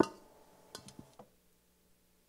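A sharp knock, then a few light clicks about a second in, followed by quiet room tone with a faint steady hum.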